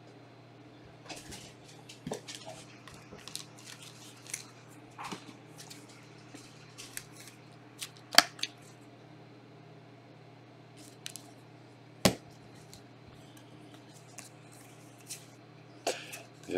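Trading cards and a clear plastic card holder being handled: scattered light clicks and rustles, with two sharper clicks about eight and twelve seconds in. A faint steady low hum runs underneath.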